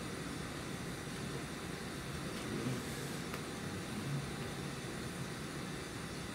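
Steady background room noise: an even hiss with a low hum, and a faint click about three seconds in.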